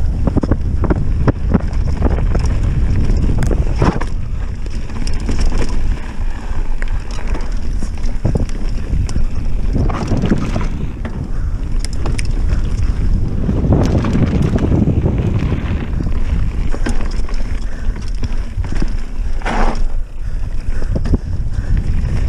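Wind rushing over a handlebar-mounted action camera's microphone as a mountain bike rolls fast down a dirt trail. It comes with a constant tyre rumble and many sharp knocks and rattles from the bike as it hits bumps.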